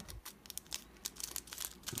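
A thin clear plastic pocket crinkling as fingers press and handle it, a run of small faint crackles.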